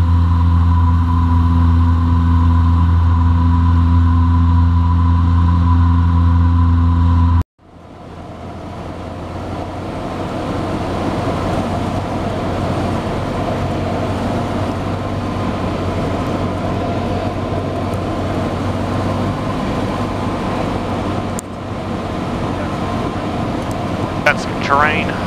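Light single-engine airplane's piston engine and propeller running steadily in flight, first as a loud, even low drone. At a sudden cut about seven seconds in, the sound drops out, then fades back in as a noisier, more hissing engine-and-propeller sound from a different microphone.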